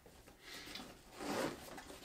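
Faint rubbing and rustling of a ballistic-nylon bag being handled as hands work at its zipper pull, in two soft swells about half a second and a second and a half in.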